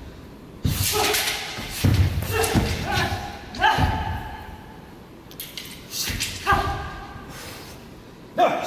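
Heavy thuds of feet stamping and landing on a carpeted wushu floor during a southern broadsword routine, echoing in a large hall. Several of the thuds are followed by a short pitched sound lasting about half a second.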